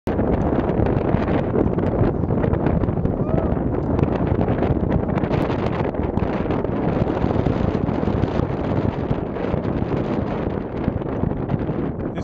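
Wind blowing over the microphone: a steady, dense rumble of noise, heaviest in the low end.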